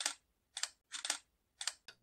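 About five light, sharp clicks spaced irregularly over two seconds, with silence between them.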